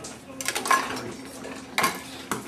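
Glass lab equipment clinking and clattering as it is handled on a lab bench: a quick cluster of sharp clinks about half a second in and another loud clink near the end.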